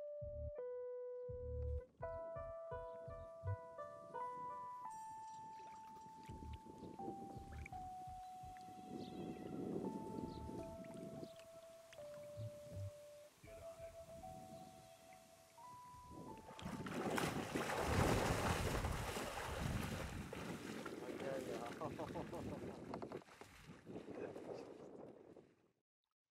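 Background music, a simple melody with a light beat at first, for about sixteen seconds. Then water sloshing and splashing around a kayak on a river, louder than the music, which fades out just before the end.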